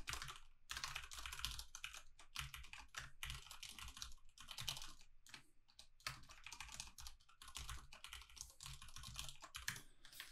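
Faint typing on a computer keyboard: irregular runs of quick key clicks broken by brief pauses.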